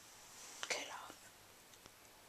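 A faint, brief whisper about two-thirds of a second in, followed by a tiny click near the end.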